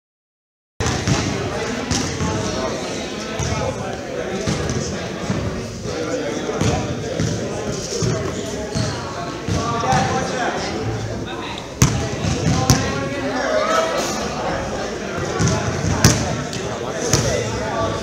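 Basketball bouncing on a hardwood gym floor, repeated thuds, with a few sharper, louder bangs in the second half, over voices in the background.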